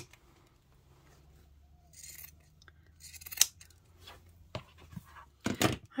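Pinking shears snipping through the seam allowance of layered fabric: a few separate, quiet cuts, the loudest about three and a half seconds in.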